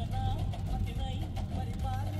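Background song with a wavering sung melody over heavy bass.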